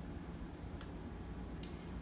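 Three faint crunching clicks as a tiny scalpel blade cuts through the flexor tendon under a contracted hammertoe in a minimally invasive tenotomy. This crunch is the tendon being released.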